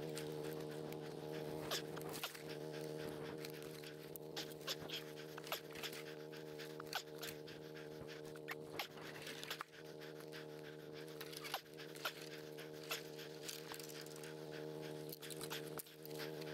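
Footsteps crunching through dry leaf litter and snapping twigs, with heavy breathing, over a steady low hum.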